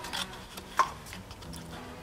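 Honda GX-series V-twin engine being turned over slowly by hand at its flywheel fan: faint clicks and rubbing, with a slightly louder click near the start and another just under a second in.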